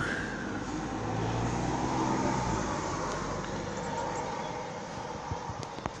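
A motor vehicle passing by: a low engine hum that swells to its loudest about two seconds in and fades out before the three-second mark, over a steady outdoor background noise.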